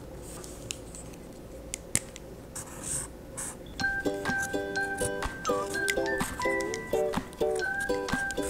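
Faint felt-tip marker scratching and a few clicks on paper. From about four seconds in, light background music with repeating notes comes in and carries on.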